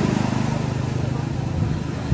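An engine running steadily with a fast, even pulse, over a steady hiss.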